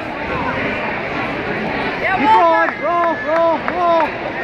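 Crowd hubbub echoing in a gymnasium, then from about two seconds in a high-pitched voice yelling a short word about five times in quick succession, urging on a youth wrestler.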